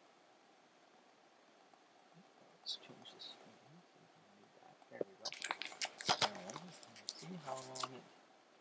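Faint room tone, then a man speaking quietly in the second half, mixed with a run of clicks.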